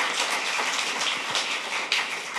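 Audience applauding: many hands clapping at once in a dense, even patter that eases toward the end.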